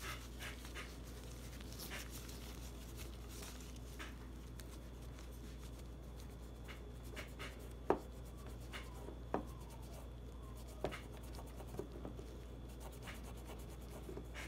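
Faint rubbing of a rag in a gloved hand over a bare stainless pistol slide as acetone residue is wiped off, with three short light clicks around the middle.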